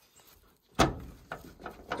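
The door handle and latch of an old pickup truck being pulled and worked: one sharp metallic clunk, then a few lighter clicks, with the door staying shut because it is stuck or locked.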